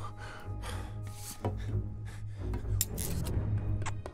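Animated film soundtrack: music over a steady low hum, with soft swishing and rubbing movement effects and a few light ticks.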